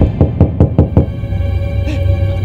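Rapid knocking on a door, a quick run of about seven knocks in the first second. Dramatic background music plays under it.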